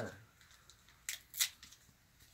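Wrapper of a small piece of chocolate being peeled open by hand: two quick crinkling tears a moment apart, about a second in, the second louder.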